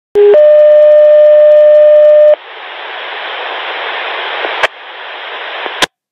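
Radio alert tone over a dispatch channel: a brief lower tone steps up to a steady higher tone held about two seconds. Then comes open-channel radio static hiss that slowly grows, broken by a click and cut off by a second click near the end.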